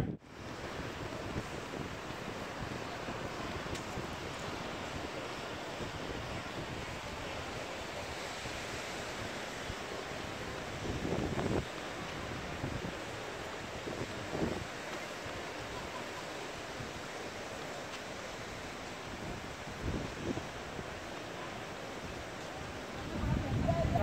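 Steady seaside noise of wind and surf, an even wash with a few brief faint sounds about halfway through and near the end.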